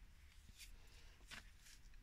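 Near silence, with three faint, brief handling sounds as a liquid glue bottle and a folded sheet of paper are picked up and pressed on a cutting mat.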